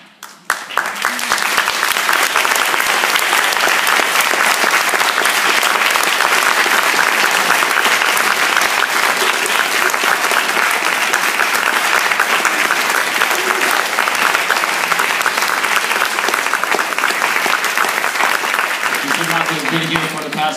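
Audience applauding, starting suddenly about half a second in and holding steady as dense clapping throughout. A man's voice comes back in at the very end.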